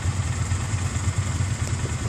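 Polaris ATV engine idling steadily, a low, fast-pulsing throb.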